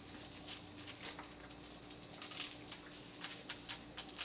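Faint, scattered soft ticks and rustles from week-old Norwegian Elkhound puppies shuffling and nursing against their mother, over a faint steady hum.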